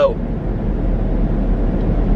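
Steady road noise inside a moving car's cabin: a low rumble of tyres and engine with an even hiss above it.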